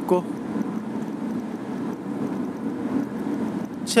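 Steady road and engine noise inside the cabin of a Mahindra XUV500 driving at speed on the highway.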